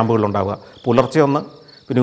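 Crickets chirping in a steady high trill behind a man talking.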